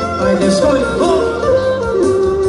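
Clarinet playing a lively folk melody with sliding, ornamented notes, over a band accompaniment with a steady low beat.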